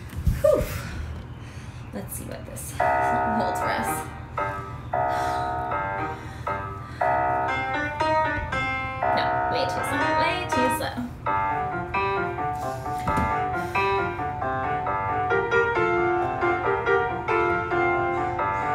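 Piano music for a ballet barre exercise, heard through a phone microphone. After a few faint knocks it comes in about three seconds in with rhythmic chords and runs on steadily.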